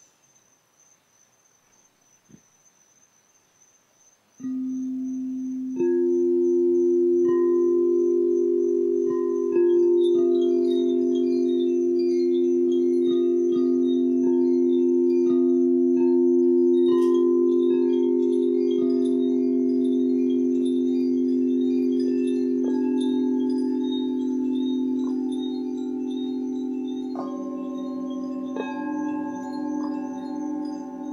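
Crystal singing bowls sounding long, steady, pure tones: one enters suddenly about four seconds in, a second joins soon after, and more tones layer in near the end. From about ten seconds on, a scatter of high, bright chime notes rings over them, with one sharper strike partway through.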